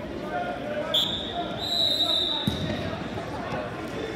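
A shrill whistle: a short blast, then a longer one lasting over a second, over crowd chatter in a gym hall. There is a thump partway through.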